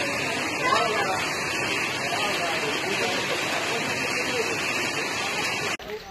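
A steady, loud rushing noise with people's voices over it, cutting off suddenly near the end.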